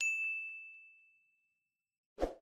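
A single bright ding from a notification-bell sound effect, one struck tone that rings and fades away over about a second and a half.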